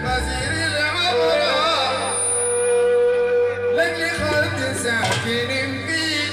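Jizani folk song from southwest Saudi Arabia: a man singing through a microphone and PA over electronic keyboard accompaniment, with a long held note in the middle.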